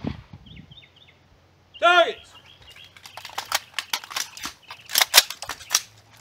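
A loud shouted call about two seconds in, then a fast, irregular string of rifle shots along the firing line as a rapid-fire string begins.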